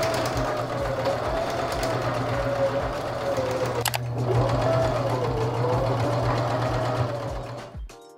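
Domestic electric sewing machine stitching a seam through crochet fabric and elastic. Its motor whine rises as it speeds up and wavers with the pedal. There is a brief break about four seconds in, and it stops near the end.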